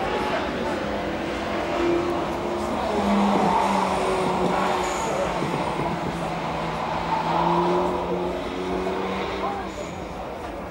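Car engine running hard on a race circuit, its note holding high and rising and falling slightly as the car is driven through the corners, over the rush of tyres and wind.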